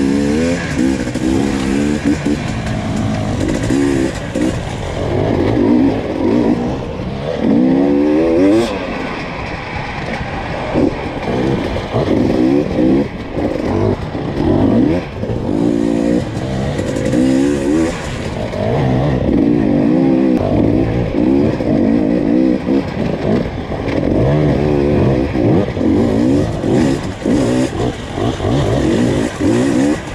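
Two-stroke enduro motorcycle engine heard close up from on board, revving up and falling back over and over as the rider works the throttle along a trail, its pitch rising and dropping every second or two.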